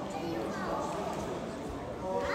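Voices of onlookers and corner coaches talking and calling out in a large hall, with the occasional soft thud of bare feet stepping on a wrestling mat.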